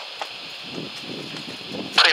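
Steady hiss from the launch-control radio loop carried over a loudspeaker, heard in a pause between calls, with faint low voices underneath from about a second in.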